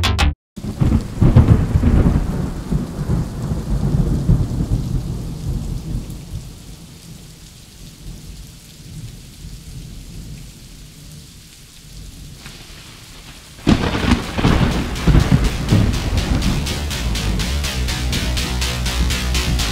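Thunderstorm recording used as a track intro: a rumble of thunder over steady rain, loudest in the first couple of seconds and dying away to a quieter hiss of rain. About fourteen seconds in, loud electronic music with a fast, even pulsing beat cuts in.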